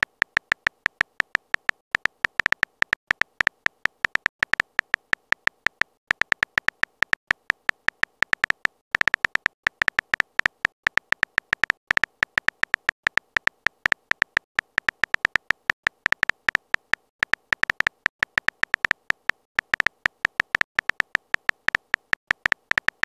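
Simulated phone keyboard typing sound: short, sharp key clicks, several a second, with a few brief pauses, as a message is typed out letter by letter.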